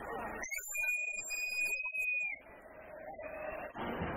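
A loud two-finger whistle held for about two seconds on one steady high pitch, bending up as it starts and dropping away as it stops. Noisy street sound follows it.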